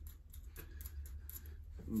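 Faint, irregular small metallic clicks of a nut being threaded by hand onto a puller bolt, over a low steady hum.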